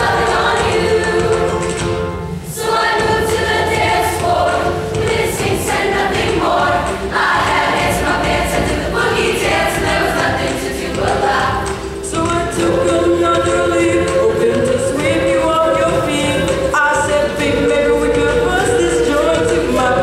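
A mixed middle school show choir of boys and girls singing in parts, with short breaks between phrases about two and a half and twelve seconds in.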